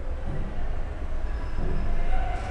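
A steady low hum, with faint weaker sounds over it.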